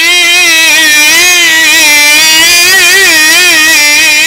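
A male Quran reciter's voice holding one long, ornamented note of tajweed recitation, loud through a microphone, its pitch wavering gently up and down without a break.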